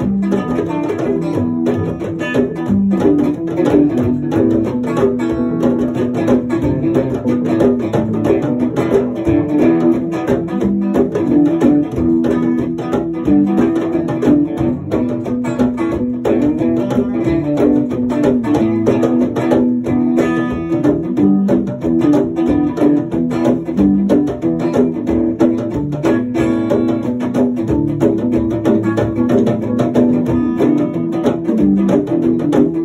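Live acoustic band playing an instrumental piece: a strummed string instrument over djembe hand drums, in a steady rhythm.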